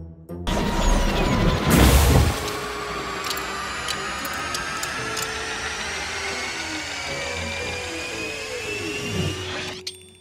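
A candy-making machine whirring and clanking, with music mixed in. It starts with a loud surge about two seconds in, then runs steadily with whines sliding up and down in pitch, and stops just before the end.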